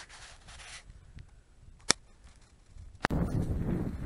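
A single sharp crack of stone striking rock about two seconds in, over faint rustling. From about three seconds in, a steady rush of wind on the microphone.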